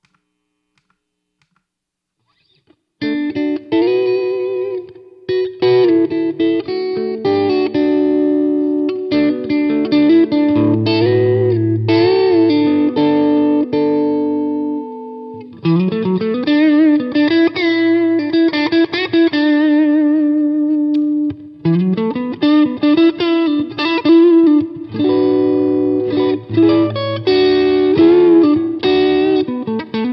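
Electric guitar played through effects pedals into an 8-inch Jensen P8R8 speaker mounted in a gutted Fender Frontman 10G cabinet, starting about three seconds in. It is a melodic lead with held notes, and twice a note glides up in pitch.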